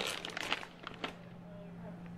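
A plastic snack canister and packaging being handled: light crinkling and a few sharp clicks, over a steady low hum.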